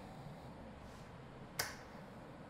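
A single sharp click about one and a half seconds in, over quiet room tone.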